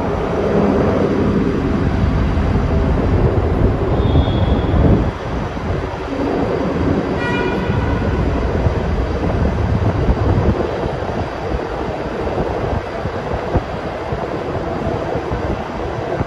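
Steady, loud rumble of road traffic and a moving vehicle inside a road tunnel, echoing off the concrete walls. A brief high-pitched tone sounds about seven seconds in.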